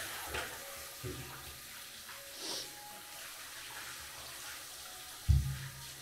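Water spraying steadily from a handheld shower head, with a dull thump near the end.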